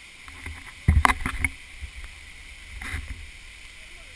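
Scuffs and knocks of a hiker climbing a rock slope with a handheld camera: a sharp burst about a second in and a smaller one about three seconds in, over a steady hiss.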